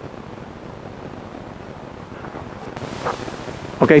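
Wind on an outdoor microphone: a steady rushing noise that swells a little in the last second.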